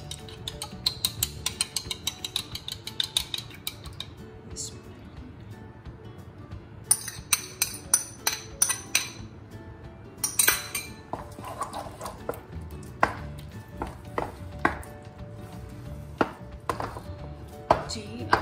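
A metal spoon clinking rapidly against a ceramic bowl as beaten eggs are scraped out. Then a wooden spatula knocks and scrapes around a nonstick wok as the eggs are stirred into thick semolina halwa, in irregular clacks.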